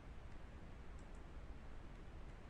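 Quiet room tone of a voice-over recording: a steady low hum and hiss, with two faint ticks about a second in.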